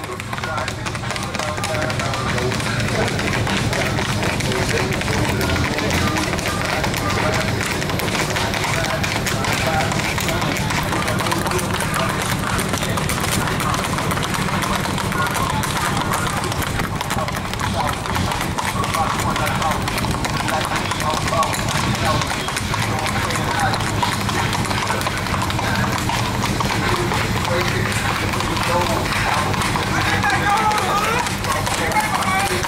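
Hooves of gaited horses, among them a black Tennessee Walking Horse, clip-clopping on a paved road in a quick, steady beat, with music and voices going along under them.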